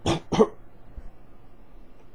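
A man coughs twice in quick succession, two short harsh bursts in the first half second, with a hand raised to his mouth.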